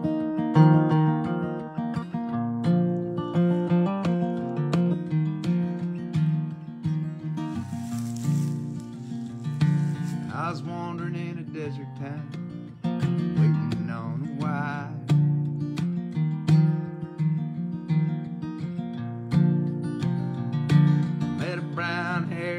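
Acoustic guitar strummed in a steady rhythm. A voice comes in with a few wavering, wordless sung notes about halfway through and again near the end.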